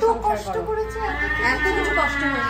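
A woman's voice: a few quick words, then a high, drawn-out whining wail held steady for about a second.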